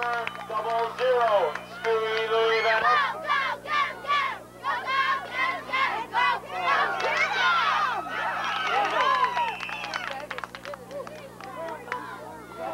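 Many voices on the sidelines of a football game shouting and cheering during a play, yelling over one another, dying down after about ten seconds. A steady low hum runs underneath.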